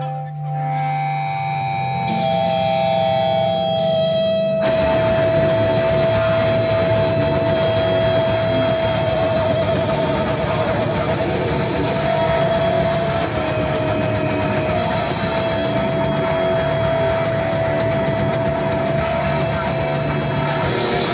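Heavy metal band playing live: held electric guitar notes over a low drone, then the full band with drums comes in sharply about four and a half seconds in. A long high note is held across the loud playing and wavers about halfway through.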